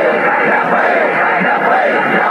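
Crowd of men shouting slogans together, many voices overlapping, loud and continuous.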